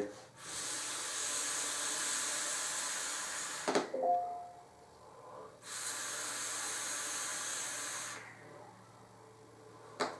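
A long drag on a brass mechanical vape mod fitted with a 0.3-ohm coil: a steady hiss of air drawn through the atomizer for about three and a half seconds. A short throaty sound follows, then a second steady hiss of about two and a half seconds as a large cloud of vapour is breathed out.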